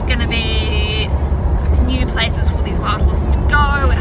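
Steady low rumble of a car's engine and road noise heard inside the cabin while driving, with short snatches of a woman's voice over it.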